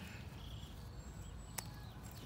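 A single sharp snip of scissors cutting a bush bean pod from the plant, about one and a half seconds in, against a faint quiet background.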